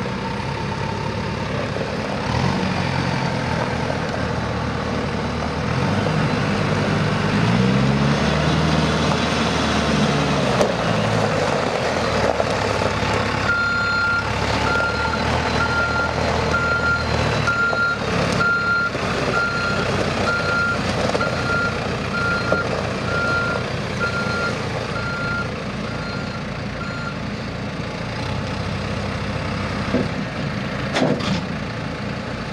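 Diesel backhoe loader engine running, its revs rising and falling once in the first third. From about the middle, a reversing alarm beeps a little over once a second for around thirteen seconds, then stops.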